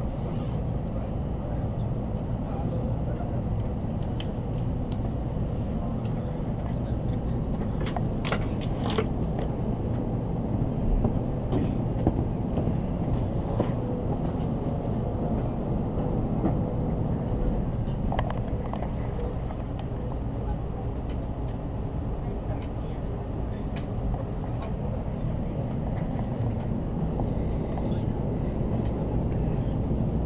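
Steady low rumble inside a Shinkansen carriage as the train moves slowly alongside a station platform, with a few sharp clicks about eight to nine seconds in.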